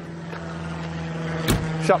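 A coffee trailer's rear door swung shut with a single solid thud about one and a half seconds in.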